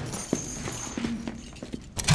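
Footsteps going down stone stairs: a few short knocks and scuffs that grow quieter.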